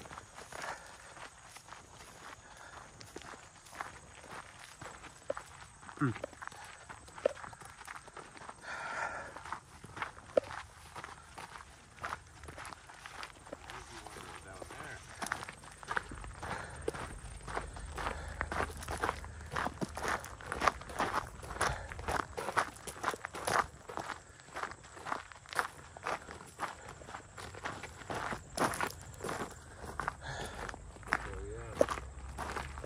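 Footsteps of a hiker walking over a rough, uneven trail. The steps are sparse at first and then settle into a steady, louder stride through the second half, with a low rumble for a few seconds partway through.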